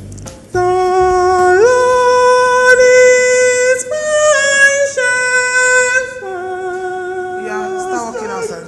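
A man singing unaccompanied in a high voice. He holds long sustained notes that step up in pitch, then higher, then drop back lower near the end. The singing starts about half a second in.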